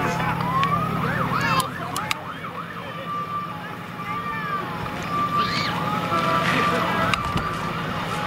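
A siren wailing, its pitch sliding down and back up, mixed with shouts and cheers from spectators. A low hum drops away about a second and a half in.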